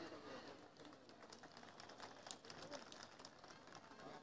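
Near silence: faint background noise with a few faint ticks a little past halfway.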